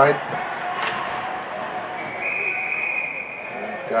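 A single sharp knock from play on the ice about a second in, then a referee's whistle blowing one steady blast of just under two seconds that signals a stoppage in play, over steady ice-rink background noise.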